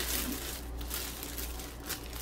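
Clear plastic cellophane wrap crinkling and rustling irregularly as gloved hands pull it up around a fruit arrangement.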